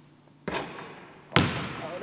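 A basketball hitting a gym floor twice, about a second apart. The second hit is the louder, and each rings off in the hall's echo.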